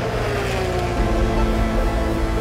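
Background music with steady held chords, with a racing car's engine mixed in, its pitch falling in the first second as it passes.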